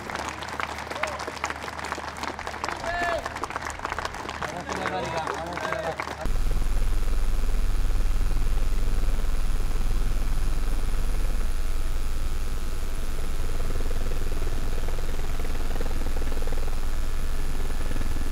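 Crowd voices and talk, then an abrupt cut about six seconds in to the steady low rumble of a helicopter with a thin high whine, heard from on board.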